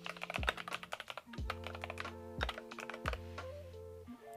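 Typing on a computer keyboard, rapid keystrokes in two short runs as a note-card title is entered, over soft background music with held notes.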